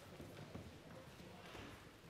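Faint footsteps on a hard floor and low, indistinct distant talk, otherwise near silence.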